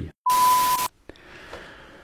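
A bleep sound effect: one steady high beep over a burst of hiss, lasting just over half a second and cutting off suddenly, followed by faint room tone.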